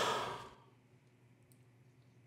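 A person's breathy sigh, loud at first and fading out within about half a second, then near-quiet room tone.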